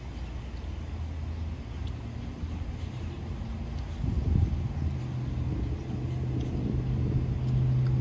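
Low, steady engine hum of a nearby car, growing louder from about halfway through.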